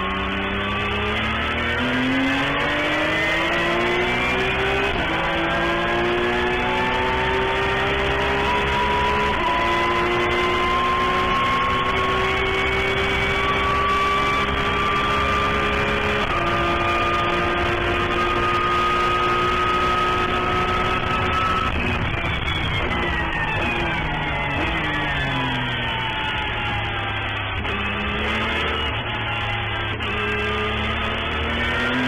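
Porsche 911 GT3 Cup race car's flat-six engine at full throttle, heard from inside the cockpit, climbing in pitch through three upshifts. About two-thirds through, the revs fall away as it brakes and downshifts for a corner, then pick up again near the end.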